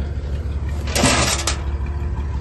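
A bent sheet-metal panel being pushed and flipped over in the grass, giving one short scraping rustle about a second in. Under it runs the steady low hum of an idling engine.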